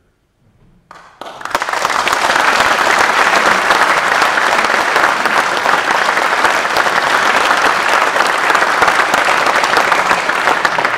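Audience applauding a speaker's remark, breaking out suddenly about a second in and going on loud and steady.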